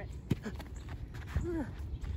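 Footsteps on a snow-covered lawn, a few short crunching knocks over a low steady rumble. A single short vocal "ah" comes about one and a half seconds in.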